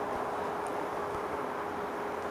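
Steady sizzle of butter and barbecue sauce cooking in a flat pan under skewered bread rolls, with a constant low hum underneath.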